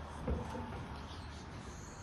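Heavy steel lid of an offset barrel smoker being lifted open. The sound is faint: a brief sound from the lid about a third of a second in, over a steady low hum.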